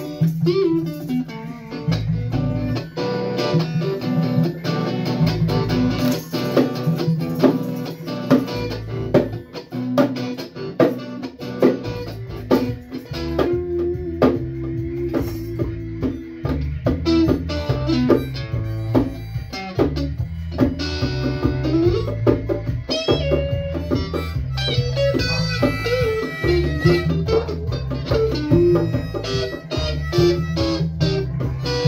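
A band playing instrumental music: plucked guitar over a steady bass line, with drums keeping the beat.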